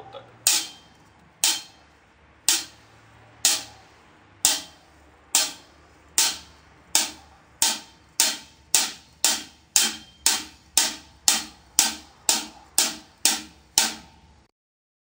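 Drumstick hits on a drum, about twenty sharp strokes each with a short ring, evenly spaced and speeding up from about one a second to about two a second.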